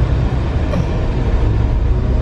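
Steady low rumble of a car driving in traffic, heard from inside the cabin.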